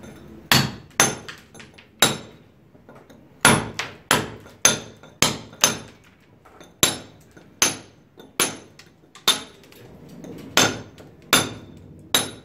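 Hand hammer striking a steel chisel against a concrete ceiling slab, chipping off rough ridges and burrs to level the surface before plastering. The strikes are sharp and metallic with a brief ring, coming irregularly about one to two a second, with a short pause near the start.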